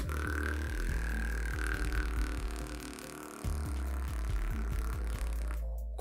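A beatboxer's lip roll, the lips buzzing on one steady held tone for about five seconds, over background music with a deep bass line.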